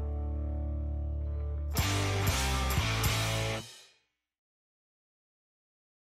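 Ending of a rock song: an electric guitar chord held and ringing over the bass, then about two seconds in the full band comes back for a closing flourish with a few drum hits. It cuts off about three and a half seconds in, fading out within half a second.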